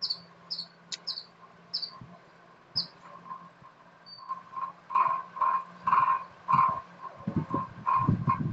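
Animal calls: a run of short, high chirps about every half second, then a rhythmic series of lower repeated calls in the second half, over a faint steady hum.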